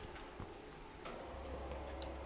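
Faint room noise with a few scattered clicks and knocks; a low hum comes on about a second in.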